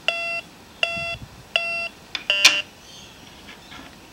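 MD-9020C metal detector beeping as its coil is passed over a dollar coin: three identical short beeps about three-quarters of a second apart, then a brief rougher-sounding tone with a click.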